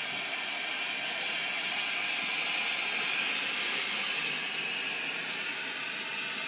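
Glassworker's bench torch burning with a steady, unchanging hiss.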